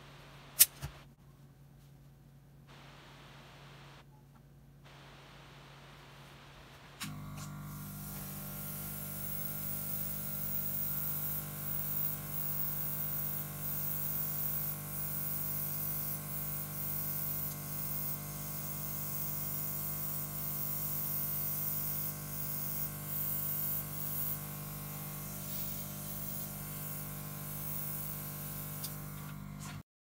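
Airbrush spraying: a steady hiss of air over the steady hum of its small air compressor, starting about seven seconds in and stopping just before the end. A single sharp tap sounds about half a second in.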